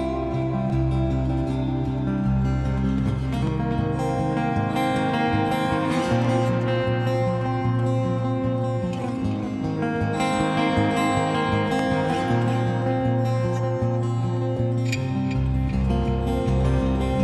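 Solo steel-string acoustic guitar picked in an instrumental passage, notes ringing over one another. The deep bass notes drop out about four seconds in and come back near the end.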